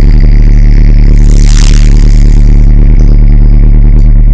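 Logo ident sound effect: a loud, deep sustained bass rumble with a bright whoosh that swells and fades about one and a half seconds in.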